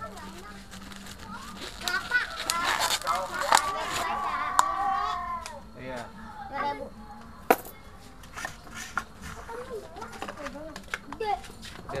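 Several young children talking and calling out in high voices, loudest between about two and five and a half seconds in. A few sharp clicks cut through, the loudest about seven and a half seconds in.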